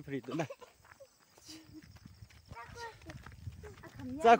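Faint voices in short snatches, a brief one at the start and another about three seconds in, with quiet gaps between.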